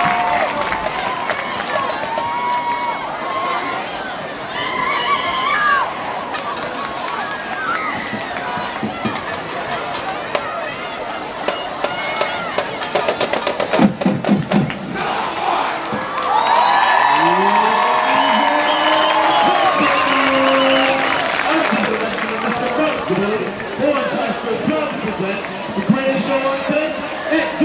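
Stadium crowd chattering and cheering, with scattered shouts and whoops that grow louder about two-thirds of the way through. A brief burst of low thumps comes just past the middle.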